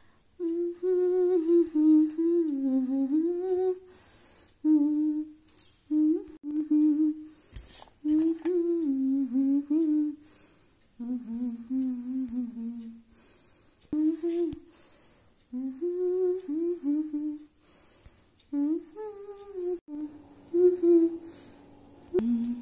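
A voice humming a tune in short melodic phrases with brief pauses between them.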